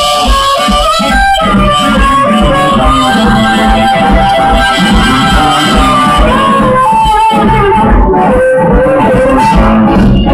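Live blues band: a harmonica solo of long held and bent notes over electric guitars and a rhythm section.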